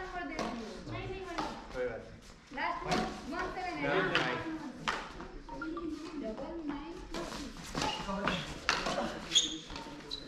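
Badminton rally in a large hall: repeated sharp clicks of rackets hitting the shuttlecock and of footwork on the court, mixed with people's voices talking.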